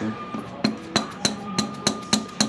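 A screwdriver punched into a spin-on oil filter canister and levered round to break the overtightened filter loose. It makes a quick, irregular run of sharp metallic clicks, about eight in under two seconds.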